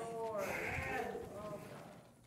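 Faint, distant voices, well below the preacher's miked speech, with wavering pitch that fades out near the end: congregation members responding during a pause in the sermon.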